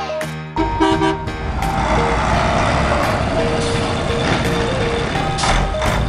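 Truck engine running, with several short horn toots in the middle, mixed with music.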